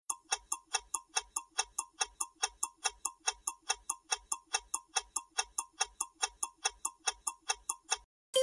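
Countdown-timer sound effect: a clock ticking evenly at about four ticks a second.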